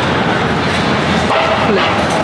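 Loud, dense city street noise with voices of passers-by, and a brief falling call about three-quarters of the way through.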